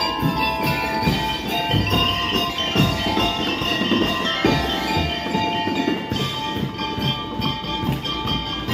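Drum and lyre corps playing: rapid pitched mallet notes from bell lyres and xylophones carry the tune over steady drum beats.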